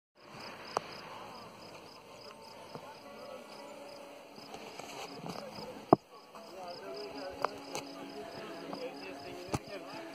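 Outdoor ambience of insects chirping in a steady, even pulse, with a few sharp clicks, the loudest about six seconds in.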